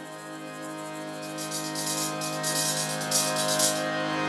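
Psych-rock band's final chord held and ringing out, a steady chord of sustained tones with a shimmering wash above it through the middle, ending the song.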